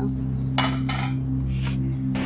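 Sustained background music chord with three short clatters of plates and cutlery being set down about half a second, one second and one and a half seconds in.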